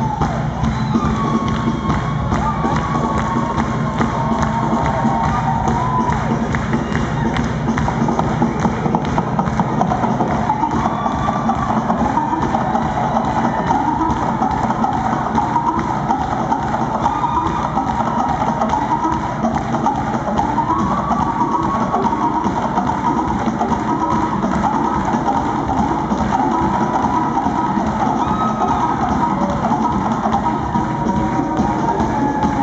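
Live band music driven by loud, dense percussion, with a wavering melody line over it and a crowd cheering along.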